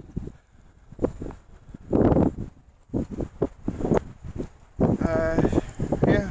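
Rustling and knocking noises close to the microphone, with a louder rush about two seconds in and a quick run of light clicks after it; a person's voice starts near the end.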